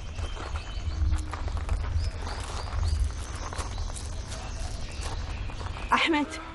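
Footsteps crunching on gravel, a run of short irregular steps, over a steady low rumble.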